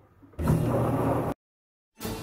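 Logan metal lathe switched on: its motor and spindle start up and run with a steady hum for about a second, then the sound cuts off suddenly.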